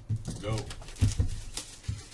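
Cardboard hockey-card hobby boxes being handled and lifted, with a couple of low knocks about a second in and near the end, and a brief rustle just after halfway.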